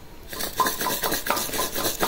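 Black olives and coarse salt clicking and rattling against the inside of a glass bottle as it is handled and tipped over, a quick run of small clicks, about five a second.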